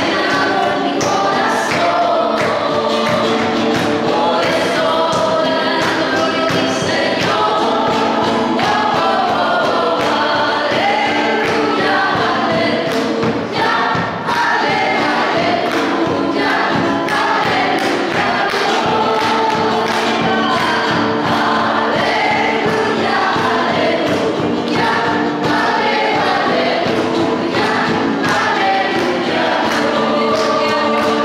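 A group of voices singing a slow worship song, with long held notes.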